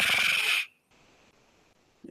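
A man imitating an ATM dispensing cash with his mouth: a breathy hiss that cuts off suddenly under a second in, followed by near silence.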